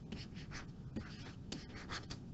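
Faint, irregular scratches and light taps of a stylus drawing short strokes on a pen tablet.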